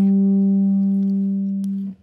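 A single note on a hollow-body archtop jazz guitar, picked just before and left to ring, slowly fading, then cut off sharply just before the end.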